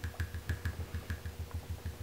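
Sponge dauber dabbing shimmer paint onto a rubber stamp on a clear acrylic block: quick soft taps, about five or six a second.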